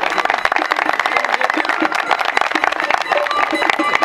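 Audience applauding, many hands clapping at once, with traditional music faint underneath.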